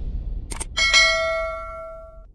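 Subscribe-button sound effect: two quick clicks about half a second in, then a single bright bell ding that rings out and fades over about a second and a half.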